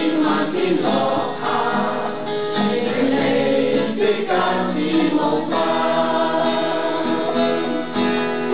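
Small amateur mixed choir of men and women singing a song together, accompanied by a strummed acoustic guitar.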